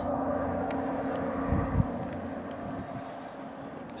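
A steady low mechanical rumble, like a distant motor vehicle, slowly fading away, with a brief low bump about a second and a half in.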